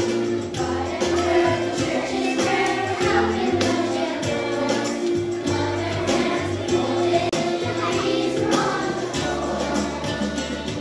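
Children's choir singing a song together over an instrumental accompaniment with a steady beat.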